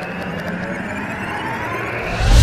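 A whoosh sound effect swelling up, jet-like, with a faintly rising pitch, building towards a hit.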